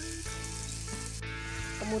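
Sliced white bird's-eye chilies, green tomato, shallots and garlic sizzling evenly in oil in a non-stick frying pan as the spice mixture is stir-fried with a wooden spatula.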